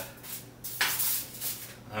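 Hands rubbing seasoning into raw chicken skin in a foil-lined pan: a brief rustling scrub about a second in, over a low steady hum.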